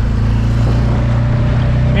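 Six-horsepower outboard boat motor running steadily with a low hum.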